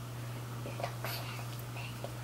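Faint whispering with a few soft sounds, over a steady low hum.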